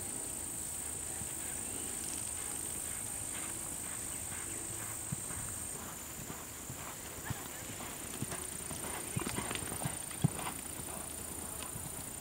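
Horse's hooves striking arena sand: scattered dull hoofbeats, thicker in the second half, the loudest about two seconds before the end.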